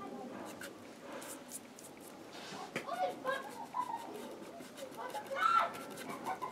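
Birds calling outside, a run of short pitched calls that grows busier in the second half.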